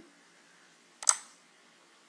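A single sharp computer mouse click about a second in, clicking Save in a file dialog, with a brief fade after it; faint background hiss otherwise.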